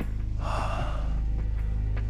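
A single gasping breath from a wounded man about half a second in, over a low, steady music drone.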